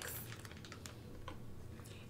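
Quiet, irregular clicks of typing on a computer keyboard.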